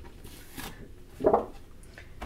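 Faint rustle and crackle of a cut faux leather shape being peeled off a sticky Cricut cutting mat, with a short voiced sound, like a brief hum, about a second and a quarter in.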